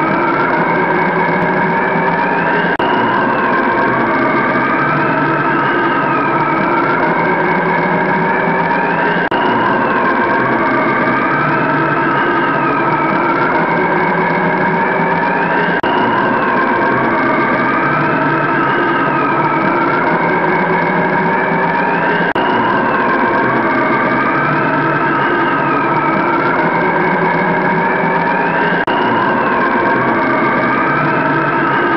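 Loud electronic intro soundtrack: a steady layered drone with a siren-like wail rising and falling about every three seconds.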